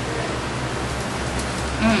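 Steady hiss with a low hum underneath and no distinct event, until a short murmured "mm" at the very end.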